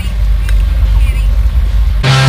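Fishing boat under way: a steady low rumble of engine and wind, with faint voices.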